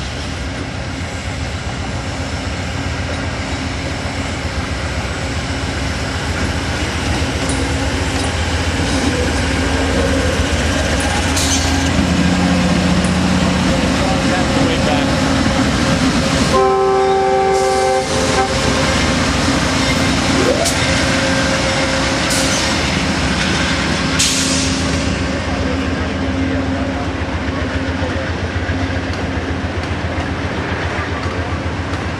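Amtrak GE Genesis P42DC diesel locomotive running as it pulls out and passes close by, growing louder toward the middle. A short multi-tone horn sounds a little past halfway, and near the end the Superliner cars roll past.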